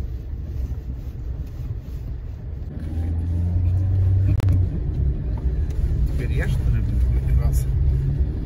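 Vehicle engine and road rumble heard from inside the cabin while driving on a rough dirt track, growing louder about three seconds in. A single sharp click sounds a little after four seconds.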